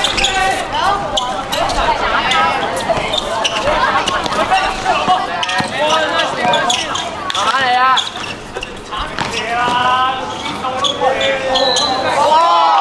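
A basketball bouncing on a hard court in live play, with repeated short thuds, under several voices calling out throughout.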